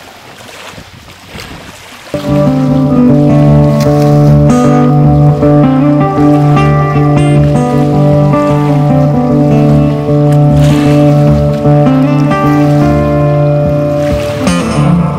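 A quiet rushing noise, then about two seconds in an acoustic guitar and fiddle duo starts playing loudly, with long held notes over the guitar.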